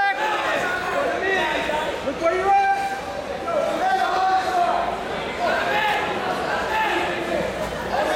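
Several people shouting and calling out over one another, the words indistinct, in a large gym hall.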